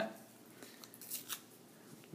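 Black construction paper torn by hand, a few short, crisp rips about halfway through.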